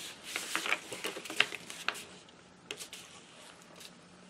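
A small paper envelope being folded in half and pressed flat by hand, giving soft rustling and crinkling with small ticks. It dies down after about two seconds.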